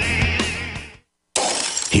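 Heavy rock bumper music fades out to a brief silence about a second in. Then a sudden burst of glass shattering and things crashing starts, a sound effect of a house being ransacked by burglars.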